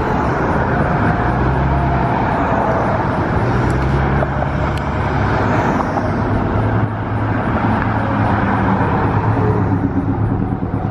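Steady, loud rumbling noise with a low hum that shifts in pitch, and a faint click about five seconds in.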